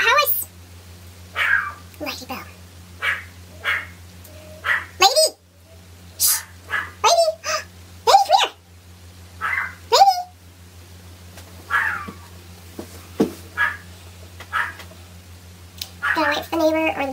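A pet dog whining and yelping in many short, high-pitched squeals that slide up and down in pitch, a few every second, over a steady low electrical hum.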